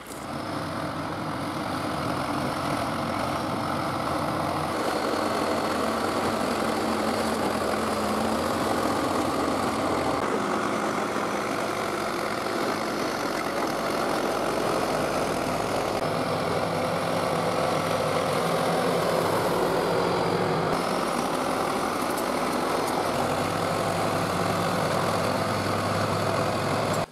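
1976 John Deere 450-C crawler bulldozer's diesel engine running steadily under load as the dozer pushes dirt and rock along a gravel road. The engine note shifts abruptly a few times.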